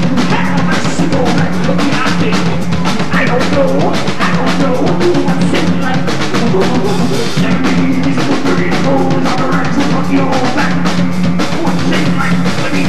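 Rock band playing loud and live: rapid, dense drumming over electric guitar and a repeating low riff, with no singing.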